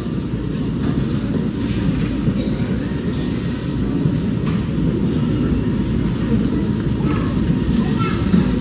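A steady low rumble of background noise that holds at an even level, with no distinct strikes or tones in it.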